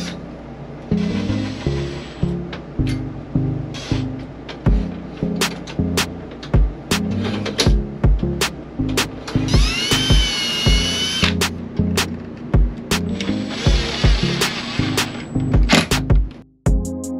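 Background music with a steady beat, over which a cordless drill/driver runs in short bursts, most clearly a rising whine about ten seconds in, as screws are driven through a metal bracket into a wood-plank wall.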